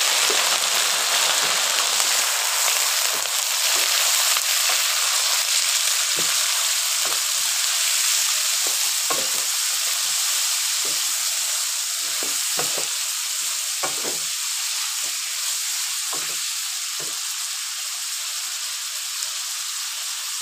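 Chunks of meat sizzling steadily in hot rendered animal fat in a karahi, the sizzle easing slightly toward the end. A wooden spatula stirring them knocks and scrapes against the pan now and then.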